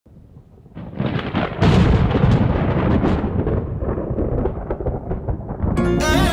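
A thunder-like rumble with crackles swells in about a second in, is loudest around two seconds, then slowly thins out. Near the end, a bowed string melody with wavering vibrato (a sarangi) begins the music.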